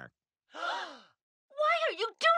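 A cartoon character's breathy vocal sigh, about half a second long, its pitch rising and then falling away. Speech follows about a second and a half in.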